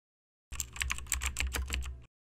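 Computer keyboard typing: a quick, uneven run of key clicks starting about half a second in, over a low hum.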